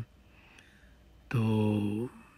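Near silence for about a second, then a man's voice holds one long, steady vowel on a single low pitch near the end.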